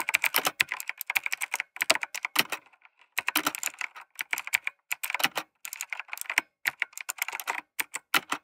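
Sound effect of fast typing on a computer keyboard: quick runs of keystrokes broken by short pauses.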